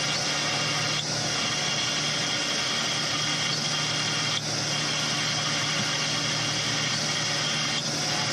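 Steady machinery hum with a constant hiss, and a few faint clicks about a second in, midway and near the end: a crewed submersible running underwater, its noise picked up by the sub's own camera.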